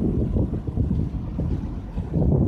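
Wind blowing across the microphone: a loud, gusty low rumble with no steady tone, easing briefly near the end.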